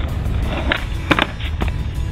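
Skateboard wheels rolling on asphalt with a steady rumble, broken by sharp clacks of the board about three times, the loudest just after a second in, as a trick is tried.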